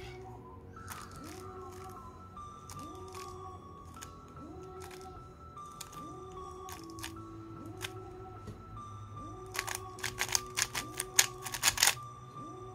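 Quiet background music with a repeating melodic figure. About nine and a half seconds in, a fast run of sharp plastic clicks from a RS3M 2020 speed cube as its layers are turned quickly through an algorithm.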